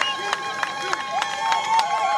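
A welcoming crowd: voices with long, held, high-pitched calls over a run of sharp claps or clicks.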